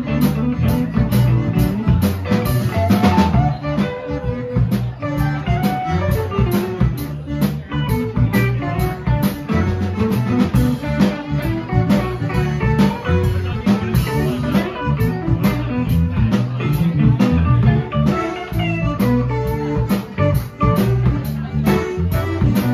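Live Cajun dance band playing: button accordion, electric guitar, bass guitar and drum kit, with a steady beat.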